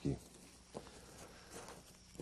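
Near silence: faint background hiss with two faint, short knocks.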